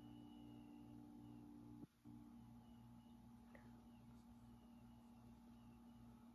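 Faint steady machine hum, several steady tones with a low throb pulsing about two and a half times a second; it cuts out briefly about two seconds in.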